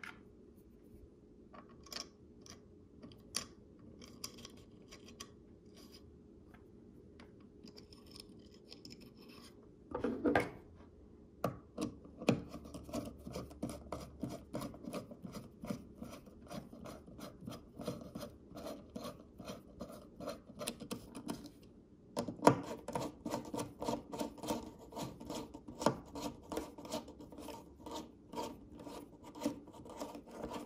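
Precision screwdriver driving small Torx screws through micarta knife-handle scales into the tang. A few light clicks come first as the screws are set in place. From about a third of the way in there are two long runs of rapid rasping clicks as the screws are turned down.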